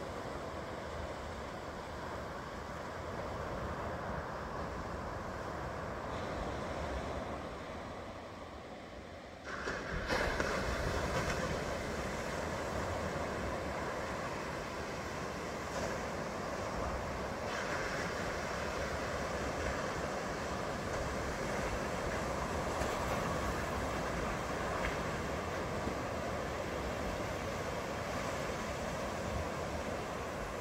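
Ocean surf washing and breaking, with wind on the microphone adding a low rumble; the noise jumps louder about a third of the way in and stays up.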